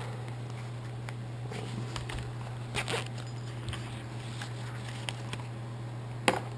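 Close handling noise of a padded zippered carrying pouch for a digital laser tachometer being unzipped and rummaged through: scattered rustles and small clicks, one brief louder rustle about three seconds in. A steady low hum runs underneath.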